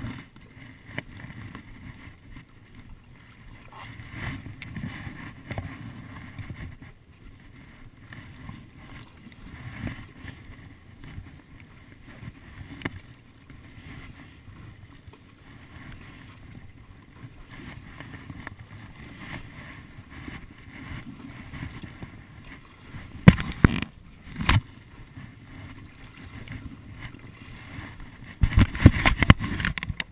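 Stand-up paddleboard paddle strokes through calm bay water, a steady low slosh and lapping. Two sharp loud knocks a little past two-thirds of the way in, then a run of louder knocking and splashing near the end.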